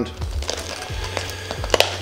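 Small cardboard product box being handled as its insert tray is lifted out: scattered light clicks and rustles of cardboard and plastic, with a sharper clatter near the end.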